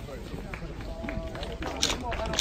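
Several people talking at once in the background, no one voice standing out, with a few sharp clicks near the end.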